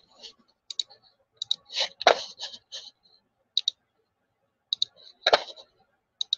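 Scattered short clicks of a computer mouse and keyboard at a desk, many coming in quick pairs, with two heavier clicks about two seconds in and near the end.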